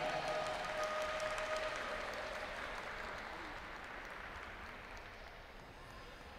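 Audience applauding in an ice arena, the clapping dying away steadily over several seconds.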